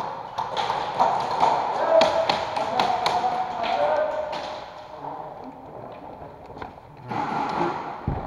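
Airsoft guns firing in an indoor arena: a scattered run of sharp clicks and pops over the first four seconds or so, with distant voices calling in the background.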